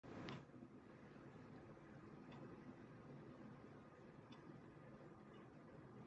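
Near silence: faint room tone with a few faint ticks.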